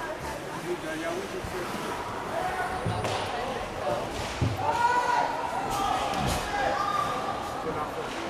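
Ice hockey play in an arena: sticks and puck knocking, with a few sharp knocks about three, four and a half and six seconds in, over the echoing hall's background noise. Voices are calling out in the second half.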